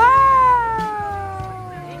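A high-pitched voice giving one long, drawn-out cheer or squeal of delight. It rises sharply and is loudest at the very start, then slides slowly down in pitch and fades.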